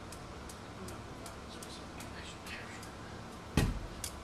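Quiet room with faint scattered clicks, then a single sharp, heavy thump near the end.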